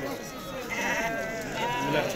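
Sheep bleating over the background chatter of a crowd.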